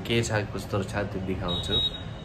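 A short, steady, high-pitched electronic beep of about half a second near the end, under talking.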